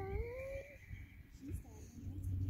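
A person's voice making a short drawn-out sound that rises slightly in pitch at the start, over a low rumble of wind on the microphone.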